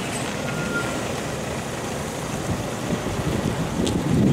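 A police pickup truck driving past, its engine and tyres running steadily.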